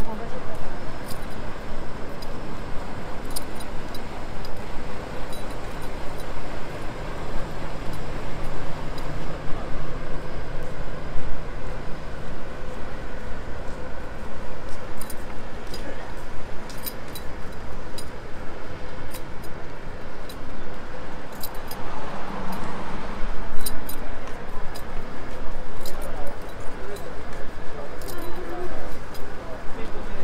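Busy city street ambience: an indistinct murmur of passers-by talking, footsteps and scattered sharp clicks, over a steady low rumble of traffic.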